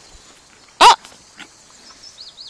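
A dog barks once, a single short, loud bark a little under a second in.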